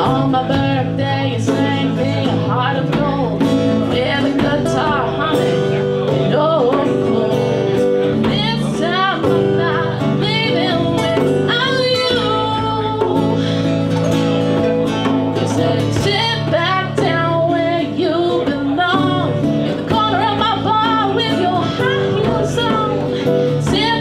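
Two guitars, a Telecaster-style thinline guitar and an acoustic guitar, playing a song together, with singing over them.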